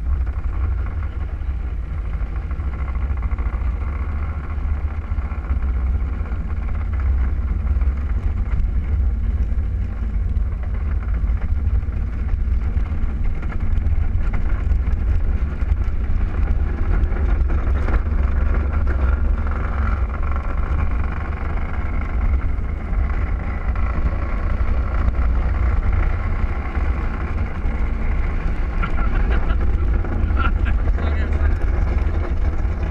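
Gravity luge cart's plastic wheels rolling on the concrete track, a steady rumble.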